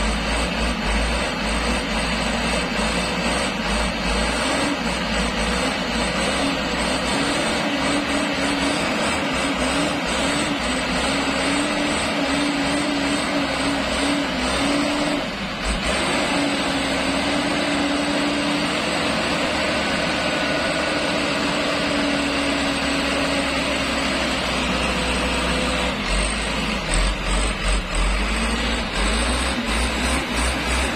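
Mitsubishi Colt Diesel truck's diesel engine straining under load as the truck pushes through thick mud, its note rising and falling steadily. A deeper rumble comes in near the end.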